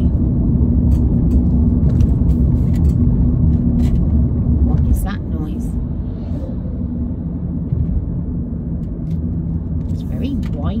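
Road and tyre noise inside a moving car's cabin: a steady low rumble that drops somewhat about halfway through, with a few light clicks.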